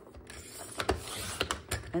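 Creative Memories paper trimmer's sliding blade run along its rail, slicing through a stack of patterned scrapbook paper with a scratchy hiss and a few sharp clicks from the cutter head.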